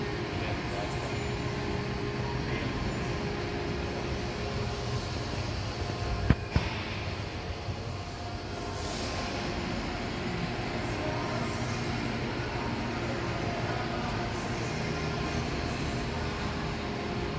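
Steady low mechanical hum and rumble, with two sharp knocks about six seconds in.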